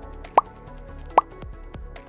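Background music with a light, steady beat, over which two short rising "plop" sound effects sound about a second apart, the cues that accompany on-screen text popping into view.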